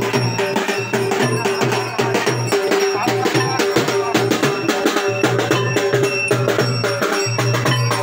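Procession drums beaten in a fast, steady rhythm with clanking metal percussion, over a sustained low tone.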